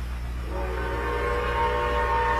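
Grand Trunk Western #6325's steam whistle sounding a chord of several steady notes. It is faint at first and grows louder from about half a second in, over a low steady rumble.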